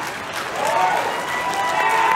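Audience in a hall applauding, with voices calling out over the clapping.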